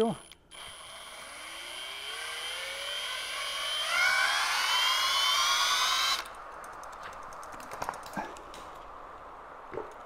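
A cordless drill spins up a bicycle wheel by its axle, with a whine that rises steadily in pitch and grows louder for about six seconds, then cuts off suddenly. A fainter steady noise and a few light knocks follow.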